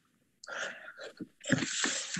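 A person's breath noises close to an open computer microphone: a short breathy rush about half a second in, then a louder, longer hissing breath near the end.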